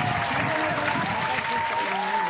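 Canned applause sound effect: dense, evenly loud clapping and crowd cheering with a few held tones over it.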